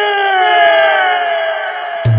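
A singer's long held vocal shout on one note, sliding slowly down in pitch and fading a little near the end.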